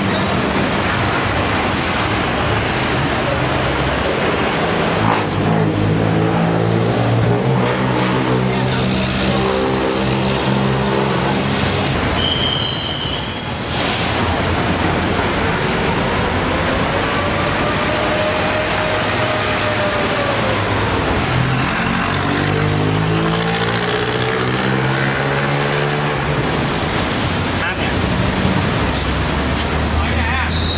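Fire hose spraying water: a loud, steady rush. Men's voices come through in two stretches, and a single tone rises and falls once near the middle.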